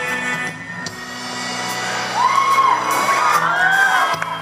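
Live country band playing through an outdoor PA, heard from the audience. From about halfway in, loud rising-and-falling calls from the crowd ride over the music.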